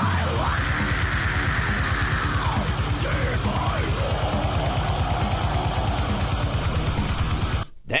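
Metalcore song with a female vocalist screaming over heavy guitars and fast, pounding drums. The music stops abruptly just before the end.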